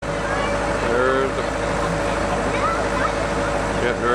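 A steady machine hum with intermittent voices of people talking over it.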